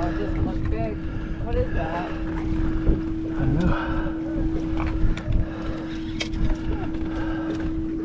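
A boat's engine idling with one steady hum, under a low rumble of wind on the microphone.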